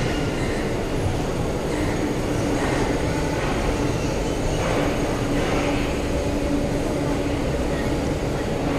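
Indian Railways passenger coaches rolling slowly along the platform line, a steady noise of wheels on the rails with an on-and-off low hum.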